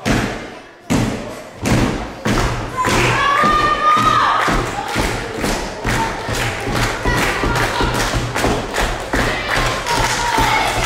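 Heavy thud of a wrestler's body hitting the wrestling ring canvas, a second thud about a second later, then a steady rhythmic thumping that runs on.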